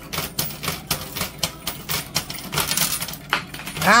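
Quarters clinking and clattering at a coin pusher arcade machine, a rapid, irregular run of small metallic clicks. A loud cry of "Ow!" comes at the very end.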